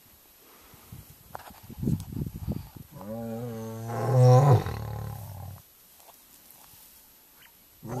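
Male lion roaring: a few low grunts about two seconds in, then one long, loud roar lasting over two seconds, and the next roar starting at the very end.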